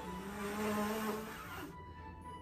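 A girl blowing hard at a row of tea-light candles to put them out: one long rushing breath that stops shortly before the end. Background music with a held low note plays under it.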